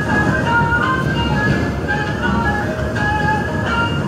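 Subway train's onboard PA chime playing a melody of short, clear notes over the steady rumble of the moving car, the jingle that comes before the arrival announcement.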